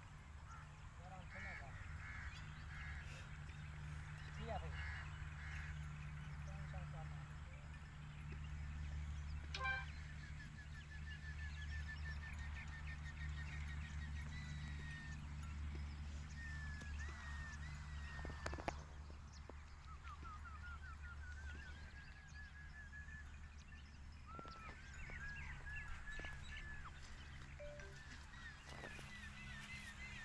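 Faint outdoor ambience: birds calling in runs of short high notes, one run rising in pitch, over a steady low hum.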